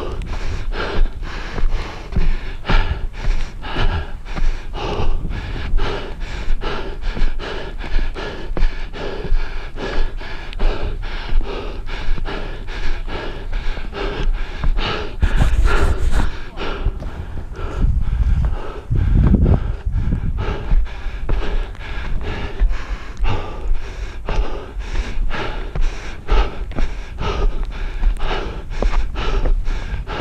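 A hiker's heavy, rhythmic panting, about two breaths a second, while climbing steep stair steps. A little past halfway, a brief hiss and then a low rumble of the body-worn camera being handled.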